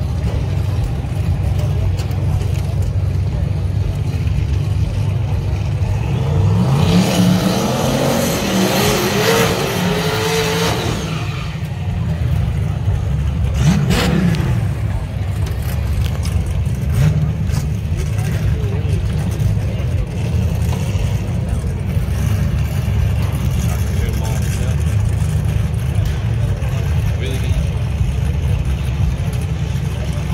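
Drag-racing cars' engines rumbling at the starting line. About seven seconds in comes a loud stretch of revving with rising pitch and tire noise, typical of a burnout, lasting about four seconds. A second short rev climbs and falls around fourteen seconds.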